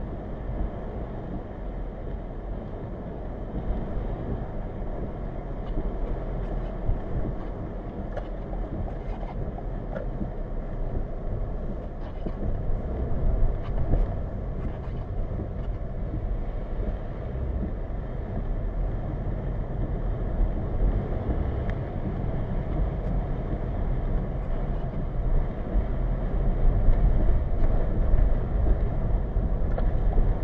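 A car driving on wet pavement, heard from inside the cabin through a dashcam microphone: a steady rumble of road and tyre noise with a light hiss. It grows somewhat louder near the end.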